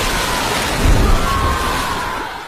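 A huge splash of water crashing down onto a gym floor, its spray falling back in a dense, steady rush like heavy rain, easing off near the end.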